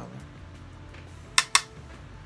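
Two quick, sharp taps a split second apart with a brief ring after them: a makeup brush knocked against an eyeshadow palette.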